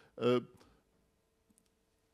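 A man's hesitant 'uh', then near silence with a faint steady hum and a couple of faint clicks about a second and a half in.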